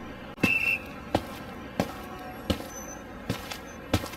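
A series of sharp thumps or knocks, about one every two-thirds of a second, over a faint hiss, with a brief high tone just after the first one.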